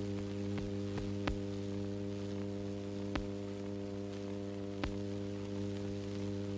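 Steady electrical hum over faint hiss, with about five sharp clicks spread unevenly through it: the background noise of an old film soundtrack with no other sound on it.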